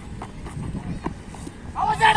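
Open-air ground ambience with a few faint knocks, then near the end a loud, held shout begins.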